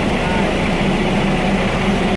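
Loud, steady noise with a constant low hum, with voices faintly under it; the sound starts and stops abruptly at cuts just outside the window.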